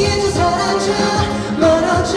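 Male K-pop vocalist singing into a handheld microphone over a pop backing track with a steady beat, amplified through the stage sound system.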